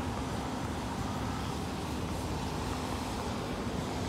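Steady road traffic noise with a low rumble and a faint even hum, with no single vehicle standing out.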